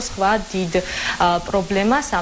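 Speech: a person talking continuously over a steady background hiss.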